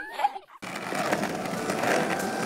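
Cartoon voices laughing briefly, cut off about half a second in; after a short gap, a shopping cart's wheels rolling across a shop floor with a steady rattle that slowly grows louder.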